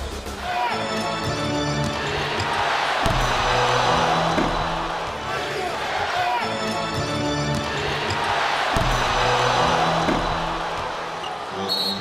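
Arena crowd cheering that swells and fades twice, with arena music playing under it and a few sharp basketball bounces on the hardwood court.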